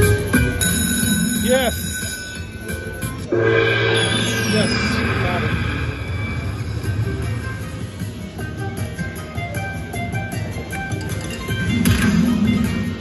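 Dragon Link slot machine playing its bonus music and effects: about three seconds in a sudden louder burst with falling sweep tones as the coins trigger the hold-and-spin bonus, then steady jingling melody.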